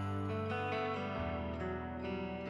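Instrumental background music with a plucked guitar, its bass note changing a little over a second in.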